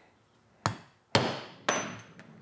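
Three sharp hammer strikes about half a second apart, setting a rivet through a folded-over leather strap; the last strike has a brief metallic ring.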